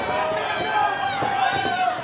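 Spectators shouting, several voices overlapping at once, with a few short knocks.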